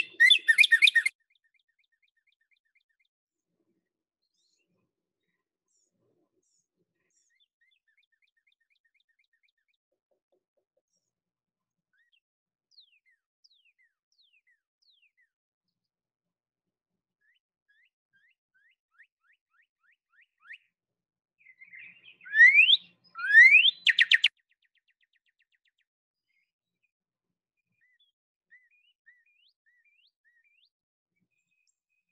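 Recorded northern cardinal song played back through a computer: clear whistled notes, loudest in a burst right at the start and again about 22 seconds in. There, two long rising slurred notes are followed by a quick run of short 'birdie' notes. Fainter song notes come between, with long quiet gaps.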